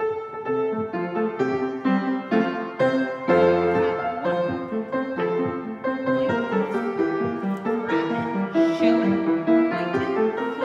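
Solo piano ballet-class accompaniment that starts suddenly and carries on with notes struck in a steady rhythm, played for a barre exercise.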